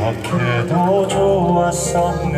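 A man singing a slow Korean ballad into a handheld microphone, over amplified instrumental accompaniment with steady held chords.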